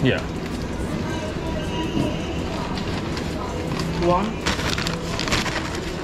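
Paper takeout bag rustling and crinkling as it is handled, for about a second starting four and a half seconds in, over a steady restaurant background of voices and hum.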